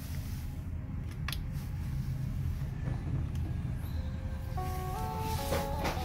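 Music playing at low volume through a bare Pioneer woofer driver, heard mostly as bass, with a couple of sharp clicks about a second in. Melody notes come in higher up near the end.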